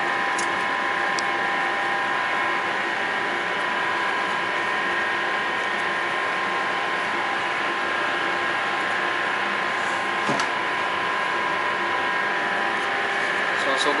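Steady machinery hum with several fixed whining tones throughout, as in a ship's workshop, with a few faint clicks of wire against metal near the start and about ten seconds in as wire is worked around a brass fire-hose coupling.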